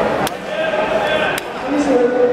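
People's voices calling out in drawn-out, held tones, with two sharp clicks, one near the start and one past the middle.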